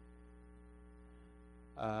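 Steady electrical mains hum, a faint buzz of evenly spaced tones, with a brief spoken "um" near the end.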